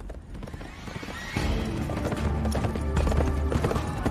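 Horse hoofbeats with a music score underneath; the hooves and music come in louder about a second and a half in.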